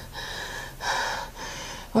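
A woman breathing hard through an open mouth, about three heavy, unvoiced breaths in two seconds.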